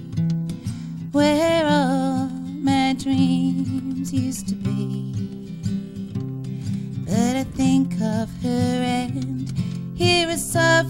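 A woman singing a bouncy country-and-western song while strumming an acoustic guitar, live at the microphone, with some held notes sung with vibrato.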